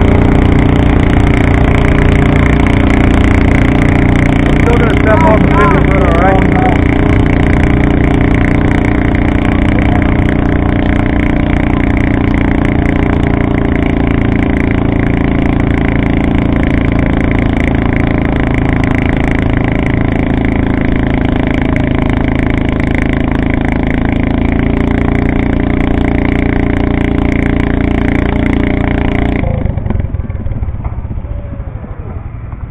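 Pulling garden tractor's engine running loud and steady at one speed, without revving, then cutting off about half a second before the end.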